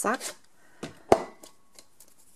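Two sharp plastic clicks from a hand-held paper punch being handled, the second, about a second in, the louder one.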